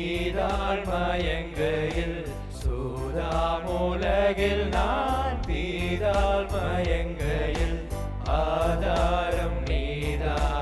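Young male voices singing a gospel song together through microphones, over an accompaniment with a steady bass and a regular beat.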